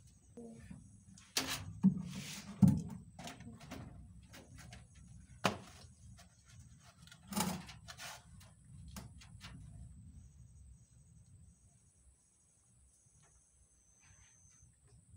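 A scattering of sharp knocks and bumps, most of them in the first eight seconds and loudest between about two and three seconds in, over a low rumble of movement that dies away after about ten seconds.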